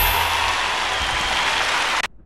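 The close of a song: the bass and drums stop and an even hiss like applause carries on over a faint held chord. It cuts off suddenly at the end.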